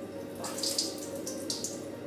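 White wine trickling out of a tilted stainless-steel cooking bowl into a kitchen sink, with a couple of brief splashy spurts, as the excess liquid is poured off.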